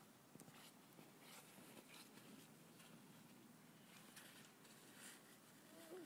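Near silence, with a few faint soft crunches of snow being stepped on and handled, and a brief rising sound near the end.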